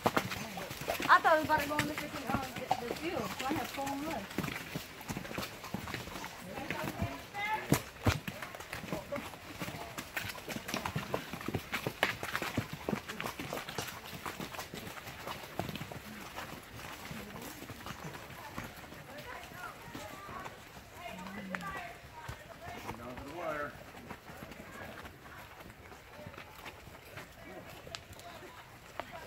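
Hooves of several horses clopping at a walk on a dirt and rock trail, an irregular run of knocks, with short bits of riders' voices now and then.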